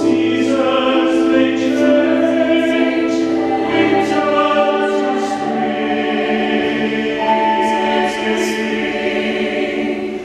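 Mixed choir of men and women singing in harmony, holding long notes.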